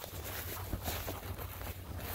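A person's footsteps walking through field cover, irregular soft steps with a low steady rumble underneath.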